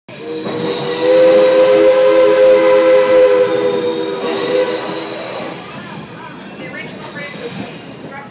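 Steam locomotive's chime whistle sounding one long blast of several notes at once, fading away after about five seconds, over the steady running noise and hiss of the moving train.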